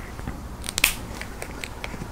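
A few faint clicks and light scrapes from handling a dry-erase marker at a whiteboard, the sharpest a little under a second in.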